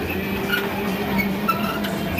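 Funfair din around a turning children's carousel: a steady mechanical rumble with a low note that keeps breaking off and returning, and short high tones above it.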